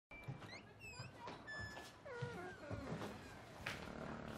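A run of short high-pitched animal calls: quick chirps, falling whistles and a few held notes, with a longer falling call about halfway through. A sharp click comes just before the end, as the front door opens.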